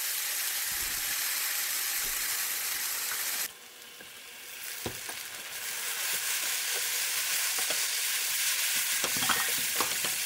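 Fish cake strips in a spicy sauce sizzling in a frying pan while a spatula stirs them, with scattered scraping clicks. The sizzle drops away suddenly about three and a half seconds in, then builds back up, louder toward the end, with a cluster of spatula clicks near the end.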